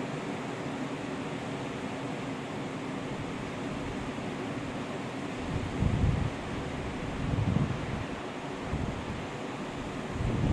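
Wind buffeting the microphone in low gusts about six and seven and a half seconds in, over a steady rushing hiss.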